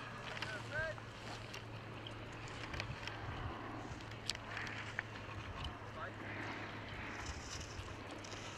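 Ski edges hissing and scraping on hard-packed snow as a giant slalom racer carves turns closer and closer, over a steady background of wind noise on the microphone. A faint distant voice sounds near the start, and two sharp clicks come midway.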